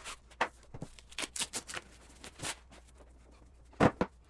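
Styrofoam packing being pulled apart and handled: a string of short rubs and creaks. One louder knock comes near the end, as the metal rack-mount network switch is set down on a wooden table.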